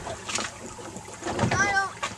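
Steady background noise of a boat at sea, with a short spoken phrase near the end.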